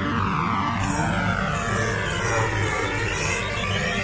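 Progressive house DJ mix with a steady bass beat, run through a slow sweeping jet-like whoosh effect that falls and then rises again over about four seconds.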